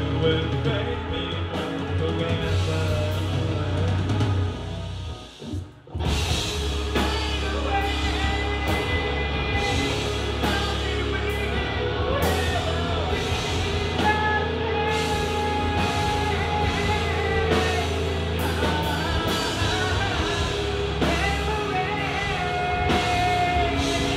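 Live rock band playing with singing. About five seconds in the band stops for about a second, then comes back in together.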